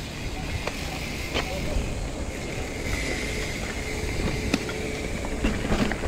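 Trek Marlin 6 Gen 3 mountain bike ridden along a dirt trail: a steady low rumble of tyres and wind, with scattered clicks and rattles.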